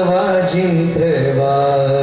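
A man singing a devotional chant in long held notes that glide between pitches, dropping to a lower note about halfway through, over steady musical accompaniment.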